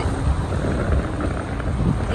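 Wind rumbling steadily over the microphone on the open deck of a sailing yacht at sea.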